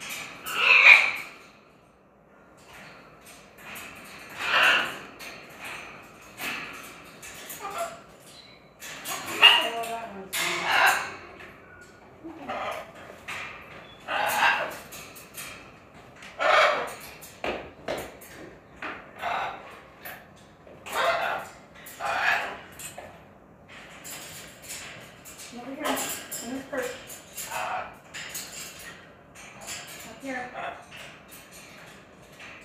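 Caged parrots, a blue-and-gold macaw among them, calling and chattering in a string of loud squawks and speech-like sounds, one every second or two. The loudest come about a second in and again around nine to eleven seconds in.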